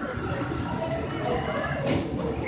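Low, steady rumble of a Ferris wheel in motion, with faint background voices and a single sharp click near the end.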